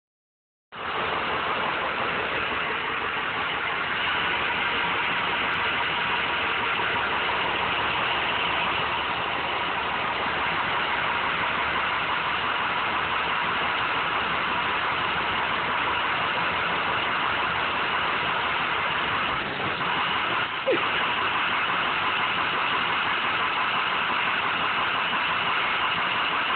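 Steady, unbroken running of an idling school bus engine, heard from inside a parked school bus, with a brief faint squeak about 20 seconds in.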